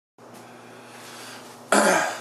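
A man coughs once, loudly and close to the microphone, near the end. Before it there is only a faint steady room hum.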